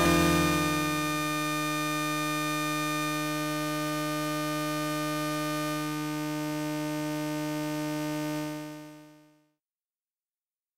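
Final held note of an electronic breakcore track: a single sustained synthesizer-like tone with a steady stack of overtones, fading out about a second before the end.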